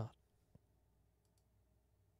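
Near silence, with one faint click about half a second in.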